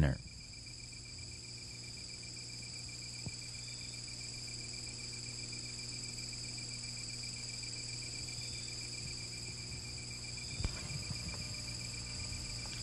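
Insects, crickets or katydids, calling steadily: a continuous high-pitched trill with a faster pulsed chirp at a lower pitch, over a low steady hum. A faint click about three seconds in and a few soft knocks near the end.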